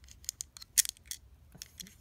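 Small, sharp plastic clicks and taps at irregular intervals: a tiny LEGO button piece being pressed and fiddled against the plastic body of a LEGO Mario figure, not yet seating.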